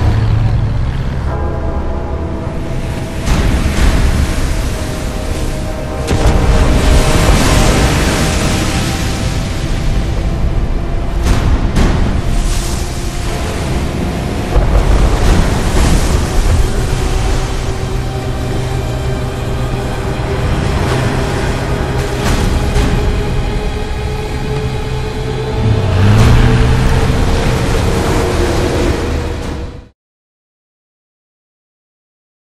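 Tense orchestral film score over storm-at-sea sound effects: surging, crashing waves and deep booms under held, dark chords. Over the second half one held note slowly rises in pitch.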